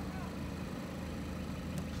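Steady low hum of an idling car engine.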